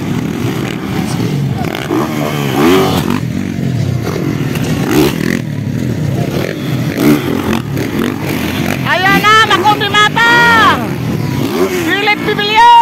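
Motocross dirt bike engines racing, revving up and down, with two loud high revs that rise and fall in pitch about three-quarters of the way through.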